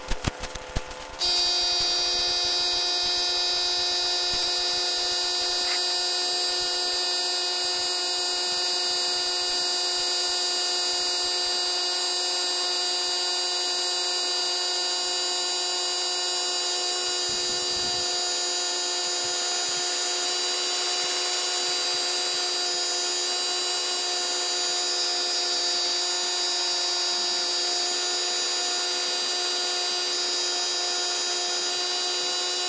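Compressed-air spray gun spraying finish, a steady whining hiss that starts about a second in after a few clicks and runs on without a break.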